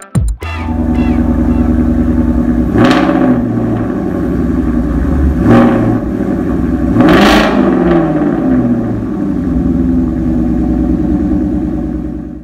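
Ford Mustang engines running and being revved, with three swelling revs about 3, 5.5 and 7 seconds in.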